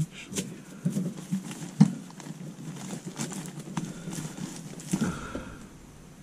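Irregular knocks, taps and scraping, roughly two a second, from hand work with a small hand saw against an insulated pipe overhead.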